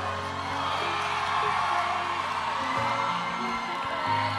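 Live band holding soft sustained chords that change a couple of times, with a crowd cheering and whooping over them.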